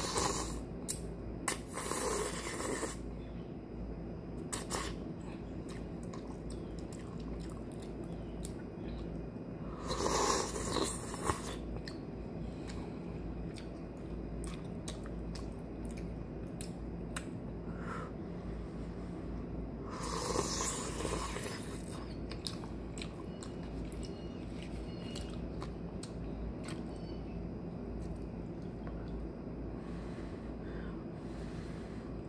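Close-up eating of instant yakisoba noodles off a fork: three slurps of noodles, near the start, about ten seconds in and about twenty seconds in, with chewing and short wet mouth clicks in between.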